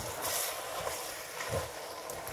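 A spoon stirring a pot of eru with waterleaf greens cooking, over a steady sizzling hiss. There is a brief rustling scrape shortly after the start and a soft knock about one and a half seconds in.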